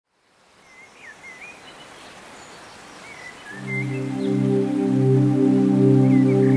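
Ambient new-age track opening: a rain-like nature ambience fades in from silence with a few bird chirps, then low, sustained ambient chords enter about three and a half seconds in and carry on steadily.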